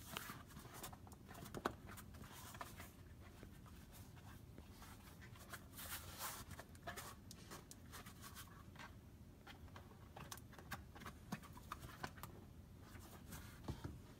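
Faint handling noise of hands flexing and rubbing a flexible FDM-printed plastic panel: soft scattered rubs and light clicks.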